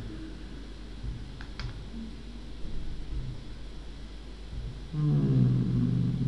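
Low steady hum with a few faint clicks, then a man's voice starting about five seconds in and becoming the loudest sound.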